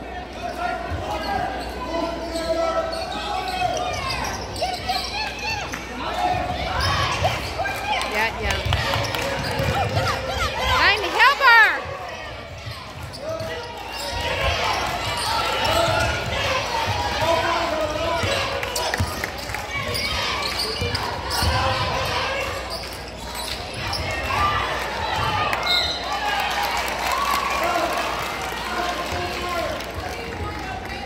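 Basketball game sounds in a large gym: the ball bouncing on the hardwood court under a steady murmur of crowd and bench voices. There is a short burst of loud high squeals about eleven seconds in.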